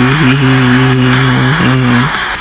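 A man singing one long, low held note, with a small dip in pitch at the start and a slide near the end.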